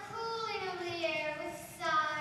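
A girl's voice singing a long, drawn-out note that slides slowly downward, with a new sung phrase starting near the end.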